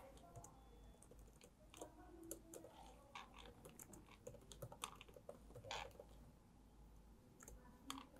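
Faint, irregular keystrokes on a Dell laptop keyboard as a short line of text is typed.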